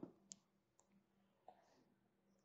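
Near silence: room tone, with two faint short clicks, about a third of a second in and again about a second and a half in.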